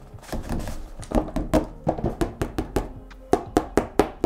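Fingers tapping and thumping on a stretched canvas print over its wooden frame: a quick, irregular run of taps, each with a short drum-like ring, as the tightness of the canvas is tested. The canvas is a tad loose on top, neither as loose nor as tight as others.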